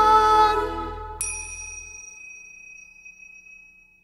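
The band's music and singing fade out in the first second. Then a pair of tingsha cymbals is struck together once, about a second in, leaving a clear high ringing tone that slowly dies away.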